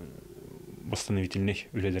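A man's voice: a pause of about a second, then speech.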